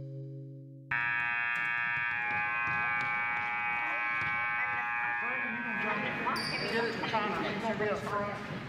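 A steady buzzing tone starts abruptly about a second in, in a gymnasium. From about three seconds in, the voices of a man and children talk over it.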